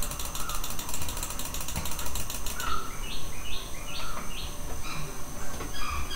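Rapid clicking, like a mouse scroll wheel being turned, for about two and a half seconds. It is followed by a run of short chirps, about two or three a second, over a faint steady hum.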